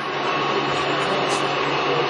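LeBlond Regal 19-inch engine lathe running under power, a steady mechanical whir with a low hum from its motor and geared headstock, coming up a little in level just at the start.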